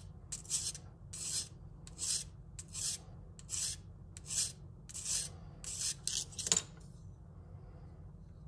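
400-grit sandpaper wrapped around a pen, wetted with dish soap, stroked along the recurved edge of a steel boning knife: a regular run of short scraping strokes, about three every two seconds, stopping shortly before the end. The strokes are raising a small burr on the recurve, the sign that this part of the edge is sharpened.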